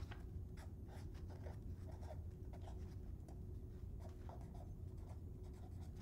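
A pen writing by hand on a sheet of paper: a faint, irregular run of short scratching strokes over a low steady hum.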